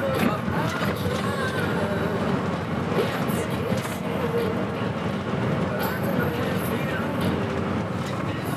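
Road noise in the cab of a VW LT 46 van driving on a motorway: a steady, even rumble of engine and tyres.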